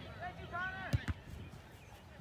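Faint shouting from players on the field, then two sharp knocks about a second in from a soccer ball being kicked.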